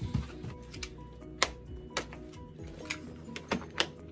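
Background music, with a few sharp clicks and snaps from a plastic storage-bin lid being cut with a utility knife and flexed by hand.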